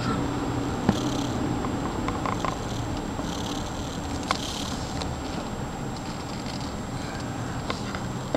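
Steady low rumble of a car driving through a road tunnel, heard from inside the cabin, with three light clicks spread through it.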